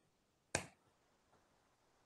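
A single short, sharp click about half a second in, otherwise near silence.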